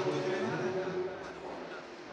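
A race car's engine, a steady drone that fades away over the first second, with indistinct voices.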